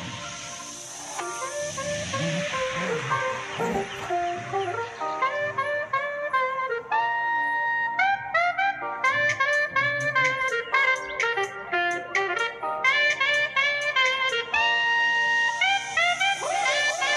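Upbeat tropical dance background music with a saxophone lead over a steady beat; the melody grows fuller about five seconds in.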